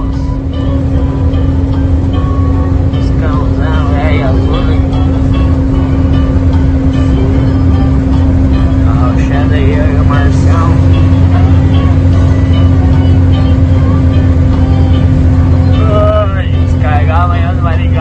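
Truck engine running steadily at highway cruising speed, heard from inside the cab as a constant low drone. Music with singing plays over it, coming and going.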